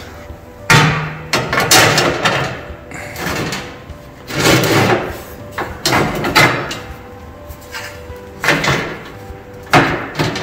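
Welded steel battery-box frame and its hinged flap clanking as they are worked by hand: an irregular series of sharp metal knocks, some ringing briefly.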